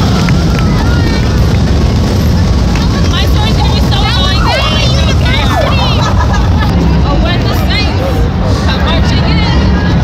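Police motorcycles rumbling past while a crowd of spectators talks and shouts, with high excited voices rising over the din in the middle.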